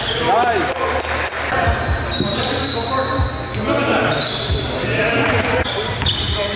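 Basketball game sounds in a large gym: the ball bouncing several times on the hardwood floor, with players' voices calling out, echoing in the hall.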